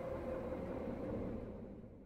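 Faint ambient rumble and hiss with a faint steady tone, fading out near the end.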